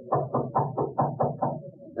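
Knocking on a wooden door, a quick run of about seven knocks over a second and a half.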